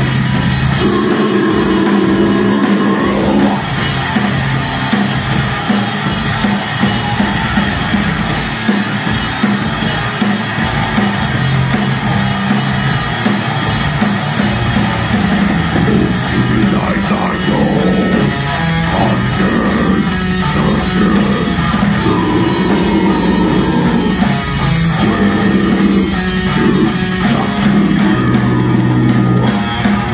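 Live metal band playing loud and without a break: distorted electric guitars, bass and a drum kit, with shouted vocals over them.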